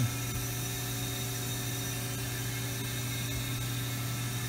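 Steady hum with several constant tones from a powered-up but idle 2005 Haas MDC 500 CNC mill-drill center.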